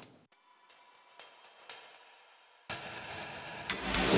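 Playback of a track's drum layers built from Output Arcade's drum loops, with hi-hat and cymbal sounds, coming in suddenly about two-thirds of the way through after a near-silent stretch.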